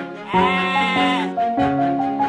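A cartoon sheep's bleat, one drawn-out 'baa' starting about a third of a second in and lasting about a second, over bright children's background music.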